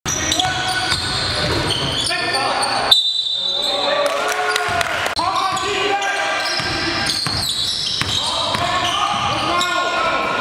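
Live basketball game sound in a gym: a basketball being dribbled on a hardwood floor, sneakers squeaking, and players' voices calling out in the hall.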